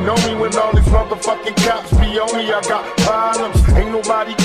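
Old-school gangsta rap track: rapped vocals over a drum beat with kick drum and hi-hats.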